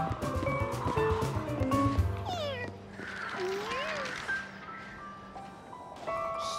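Cartoon background music with quick notes, then a cartoon cat meowing twice: a falling meow about two seconds in and a rising-and-falling meow about a second later.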